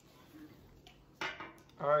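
A single short clatter of something hard, about a second in, after a quiet stretch; a man's voice starts just after.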